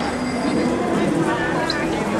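A city tram running on street tracks, giving a steady low hum with a faint high whine, under the murmur of passers-by's voices.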